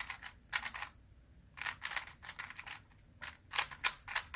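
A 3x3 Rubik's-type speedcube being scrambled by hand: quick flurries of plastic clicks as its layers are turned, with a short pause about a second in.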